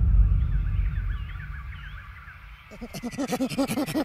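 Music fading out, then from about three seconds in a rapid, pitched 'ha, ha, ha' laugh, about six bursts a second.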